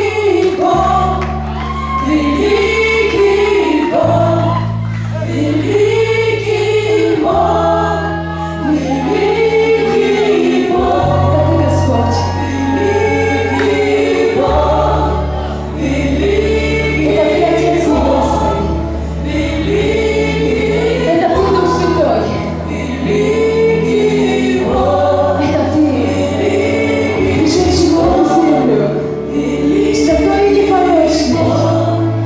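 Live gospel worship song: several women singing together at microphones, backed by keyboard, electric guitars and a bass line of held notes that change every couple of seconds.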